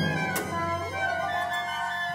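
A chamber orchestra plays contemporary classical music in sustained notes. About a second in, one line slides up and holds a steady high note, and a short click sounds near the start.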